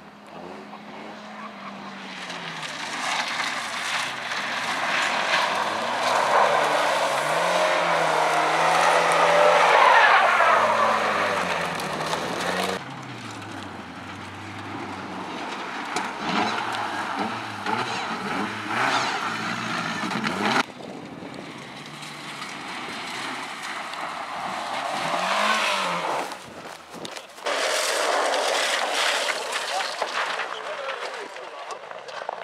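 Rally car engines at high revs on gravel stages, pitch rising and falling with gear changes as cars approach and pass. The loudest pass comes about ten seconds in, its pitch dropping as the car goes by. The sound cuts abruptly to another car a few times, near 13, 21 and 27 seconds.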